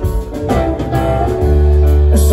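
A live band playing an instrumental passage on electric guitar, electric bass, drums and keyboard. A deep bass note comes in loud about halfway through and is held over the drumbeat.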